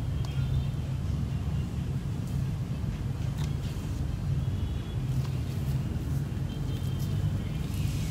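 Steady low background rumble, with a few faint small clicks.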